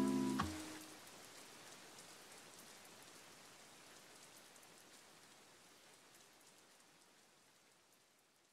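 The last note of a lofi track dies away in the first half second. A faint rain-ambience hiss follows and slowly fades out.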